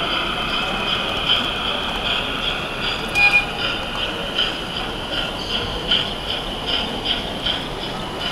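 Model steam locomotive running past with its train of goods wagons, a regular pulsing a little more than twice a second, with a brief high tone about three seconds in.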